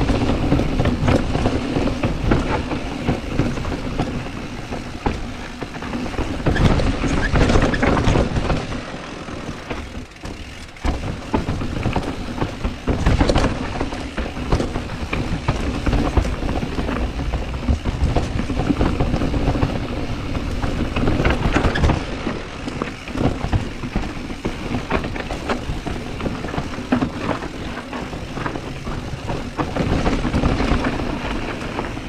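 Mountain bike riding downhill on a dirt trail: tyres rolling over dirt and stones, frequent rattles and knocks from the bike, and wind rushing over the camera microphone. The noise eases briefly about ten seconds in.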